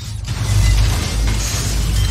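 Logo-reveal sound effect: a deep rumble under a dense rush of noise that starts suddenly and stays loud as fragments fly together to form a logo.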